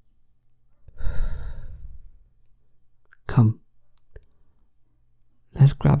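A man's long exhaled sigh about a second in, lasting about a second. It is followed by a short, low voiced sound and a faint click, and speech begins near the end.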